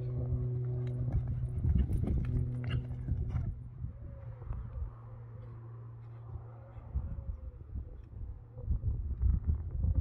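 Horse cantering on a sand arena: muffled, irregular hoofbeats that grow louder and closer together over the last few seconds. A steady low hum runs under them for the first few seconds, then drops away.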